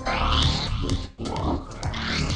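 An electronic beat run through the Pan-Oh!-Rama dual-filter plugin on its Randomania preset, its LFO-modulated filters sweeping and chopping the sound. A bright swept band rises and falls about every second and a half, with a brief dropout a little past halfway.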